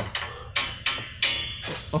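A few sharp knocks or thumps, about four, irregularly spaced, each dying away quickly.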